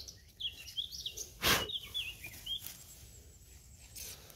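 Woodland songbird singing a string of short, chirping notes. A brief loud burst of noise cuts in about one and a half seconds in.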